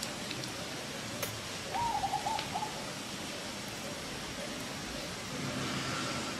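Steady outdoor background hiss with a single sharp click, then a short run of four or five high-pitched animal calls lasting under a second, about two seconds in.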